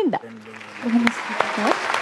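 Studio audience applauding, the clapping swelling up about a second in.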